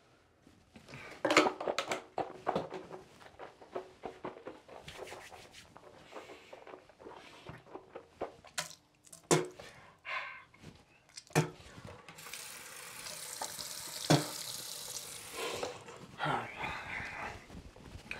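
Scattered knocks and clatter of things handled at a bathroom sink. About twelve seconds in, the tap runs steadily for three to four seconds and is then shut off.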